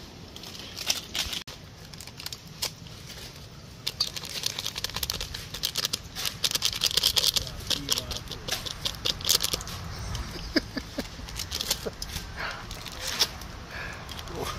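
Packet crinkling and rustling as a seasoning sachet is cut open and shaken over a pot. There is a dense run of small crackles from about four to ten seconds in.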